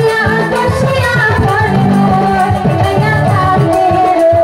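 A woman singing a Bengali Bhawaiya folk song into a microphone, her voice gliding and ornamenting over instrumental accompaniment with a steady percussion beat.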